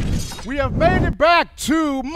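A shattering crash sound effect from the end of a show intro, fading within the first second, with a man's voice calling out over it from about half a second in.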